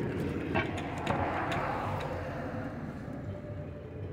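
Steady outdoor city background noise, like distant traffic, with a few faint clicks.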